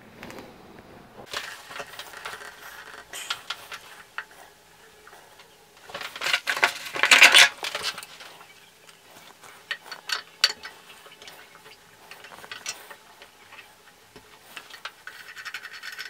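Scattered light clinks and scrapes of a metal pipe wrench and small tap parts handled against a ceramic basin and chrome tap, with a louder rustling scrape lasting about a second and a half near the middle.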